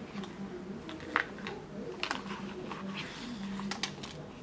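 Thick cardboard cut-out pieces and a board book being handled on a table: a few light clicks and taps, the sharpest about a second in, more around two seconds and just before the end.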